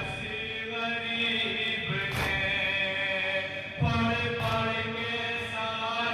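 Noha, a Shia Urdu lament for Imam Hussain, chanted by a group of men into microphones in long held lines that rise and fall. Two dull thuds cut through about two and four seconds in.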